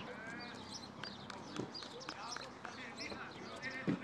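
Scattered voices and calls of footballers at training, with a few dull thumps, the loudest just before the end.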